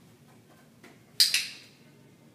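A dog-training clicker clicked once about a second in, a sharp double click from the press and release in quick succession. It marks the dog's move onto the training platform.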